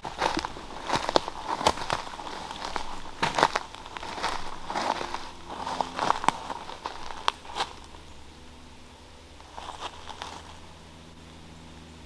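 Footsteps pushing through ferns and forest undergrowth, crunching and crackling on dry leaves and twigs at an uneven pace of a step or two a second, growing sparser and fainter after about eight seconds. A faint steady low hum runs underneath.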